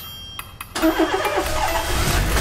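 A car engine starting suddenly about three-quarters of a second in and revving up.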